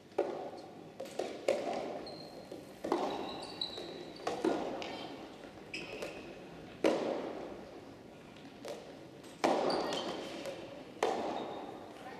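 Soft tennis rally: the rubber ball is struck by rackets and bounces on the court, a sharp pop about every one to one and a half seconds, each echoing in a large hall. Short high shoe squeaks on the wooden floor come between some of the shots.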